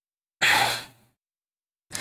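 A man's short sigh close to the microphone, about half a second long, starting just under half a second in.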